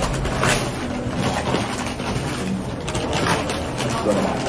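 Stiff butcher paper crinkling and rustling in bursts as a wrapped barbecue order is pulled open by hand, over the steady din of a busy dining room.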